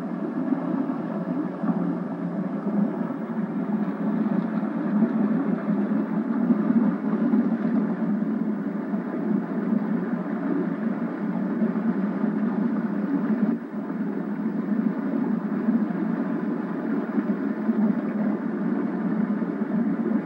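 Motorboat running steadily at speed, a continuous engine-and-water noise with a brief dip about two-thirds of the way through. It comes from an old home-video tape played back through a television speaker, so it sounds thin and lacks bass.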